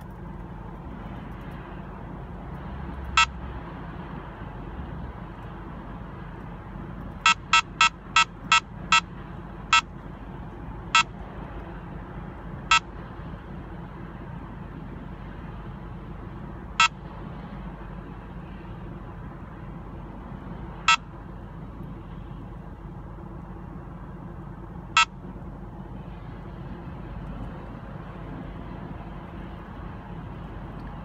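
Escort Passport Max radar detector sounding its K-band alert: short high beeps, one at first, then a quick run of about six, then single beeps spaced ever further apart until they stop, over steady road noise inside a moving car. The beeps signal a weak K-band radar signal near 24.1 GHz, the kind given off by other cars' collision-avoidance systems.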